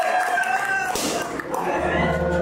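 A high, drawn-out wordless cry into a microphone, ending about half a second in. Music with a bass beat starts in the second half.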